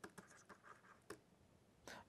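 Faint scratches and light ticks of a stylus writing on a pen tablet, a handful of short strokes against near silence, one slightly louder tick a little after a second in.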